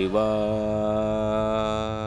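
A voice chanting one long held note in a devotional mantra style. The note steps up slightly at the start, then holds steady in pitch over a low hum.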